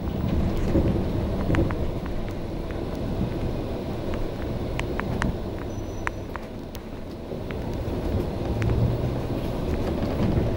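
Inside a moving MAN A91 bus: the MAN D2066 Euro 4 straight-six diesel engine running with a low rumble, under scattered clicks and rattles from the bus body and fittings. The engine gets quieter as the bus turns at a junction, then its note rises again near the end as it pulls away.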